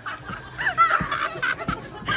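A group of men laughing and snickering, with a couple of short low thuds.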